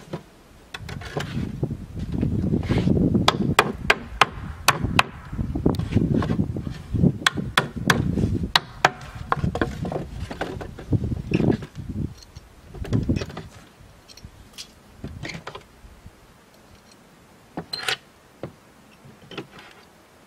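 Wooden boards handled on a wooden sawhorse: rough scraping and sliding of wood on wood with quick clattering knocks for the first dozen seconds, then a few separate knocks, two of them sharper near the end.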